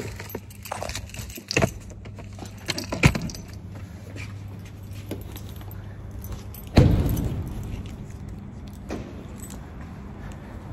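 Keys jangling and small things rattling as they are handled, then a car door shutting with a loud thump about seven seconds in, over a steady low hum.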